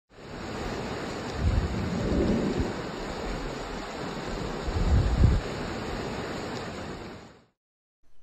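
Steady rushing water, with two deep low rumbles, the first about a second and a half in and a louder one about five seconds in. It fades in at the start and cuts off shortly before the end.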